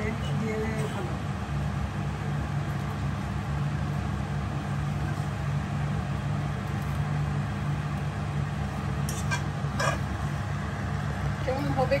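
Steady low mechanical hum, with a few short scrapes and clinks of a fork against a frying pan about nine to ten seconds in.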